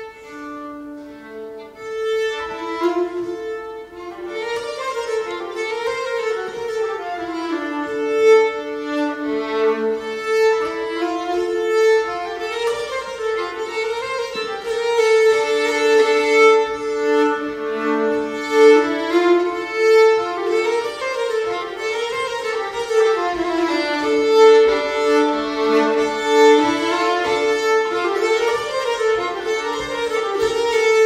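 Fiddle, nyckelharpa and accordion playing a Swedish slängpolska. The music starts right at the beginning and grows fuller about two seconds in.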